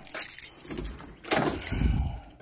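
Footsteps and the rustle of handling with a light metallic jingle as someone walks in over a doorway threshold; a low rumble swells near the end.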